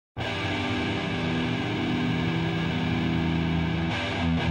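Heavy metal music opening on a held, distorted electric guitar chord, coming in abruptly just after the start and sustaining steadily.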